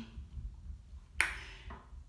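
A drinking glass clinks once, sharp and short with a brief ring, about a second in, followed by a fainter tap.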